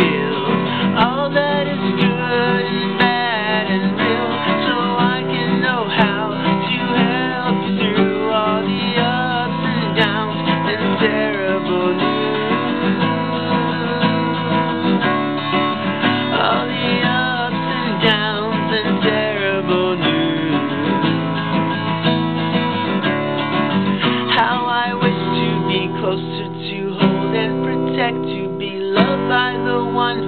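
Steel-string acoustic guitar strummed in steady chords, with a man singing over it.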